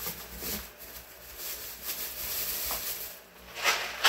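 Soft rustling and handling noise as groceries and plastic shopping bags are moved about, with a louder rustle near the end.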